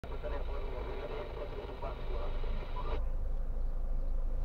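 Thin, band-limited talk from a car radio inside the cabin, cut off suddenly about three seconds in. A steady low rumble from the car, stopped in traffic, runs underneath.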